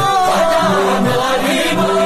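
Urdu devotional song in praise of Khwaja Gharib Nawaz, a sung line held and bending in pitch over a steady low drone.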